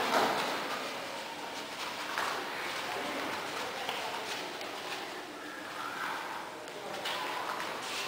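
Faint background voices and steady room noise in a hall, with no loud impacts.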